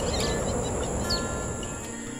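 Outdoor ambience: a few short bird chirps over a steady, high insect trill, with faint held notes of background music underneath.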